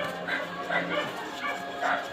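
A small dog yipping and whimpering: several short, high cries.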